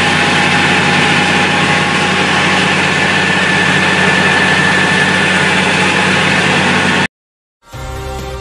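Engine-driven pressure washer running steadily, its motor humming under the hiss of the high-pressure water jet. It cuts off suddenly about seven seconds in.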